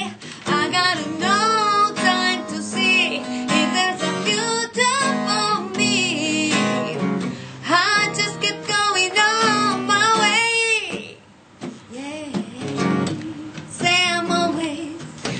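A woman singing a blues song with a strong vibrato, accompanied by a strummed acoustic guitar. About eleven seconds in, the voice drops away and the guitar plays on more quietly.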